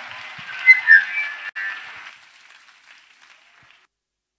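Audience applause with two short, loud whistles about a second in, fading away to nothing near the end.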